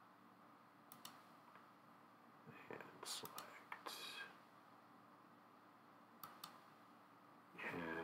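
Near silence: faint steady room hum with a few soft computer-mouse clicks, and a faint murmured voice about three and four seconds in.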